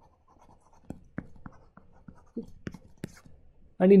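Stylus writing on a tablet: faint scratching broken by a series of short, light taps as letters are written.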